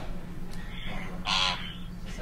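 A short, thin, harsh-sounding voice sound, a word or a laugh, about a second and a half in, over a steady low electrical hum.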